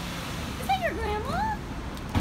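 Great Pyrenees dog whining in a few short, high cries that rise and fall in pitch, each under half a second.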